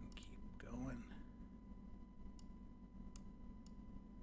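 A faint muttered word or breathy speech about a second in, over a thin, steady, faint tone and low room noise. Three faint, short clicks come in the second half.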